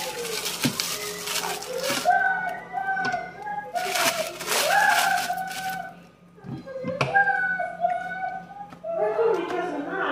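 Plastic food wrapping crinkling and tearing in bursts as a pack of frozen fish fillets is opened by hand, under a high-pitched, chipmunk-like voice from sped-up footage.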